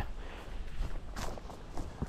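Footsteps of a person walking: a few uneven steps, the clearest a little past a second in.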